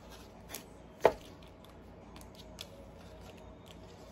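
Playing-card-sized oracle cards being handled on a table: a sharp tap about a second in, with a few softer clicks before and after.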